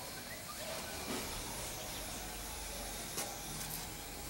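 Low, steady background hiss with no clear sound event, and a faint tick about three seconds in.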